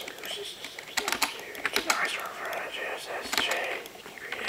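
An indistinct, low-voiced person's voice, with many sharp clicks and taps scattered through it.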